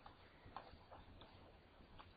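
Near silence with a few faint, short clicks from a computer mouse as a web page is clicked and scrolled.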